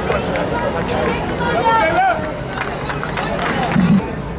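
Voices of players and onlookers shouting across an outdoor football pitch, with scattered sharp knocks and a louder thump near the end.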